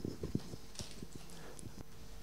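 A few soft, low knocks and bumps in the first half second, then faint room tone.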